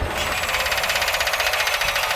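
A rapid, even mechanical rattle with no deep end, like a small machine whirring.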